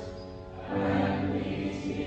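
Church choir singing in held, sustained notes; after a brief dip, a new phrase begins just under a second in.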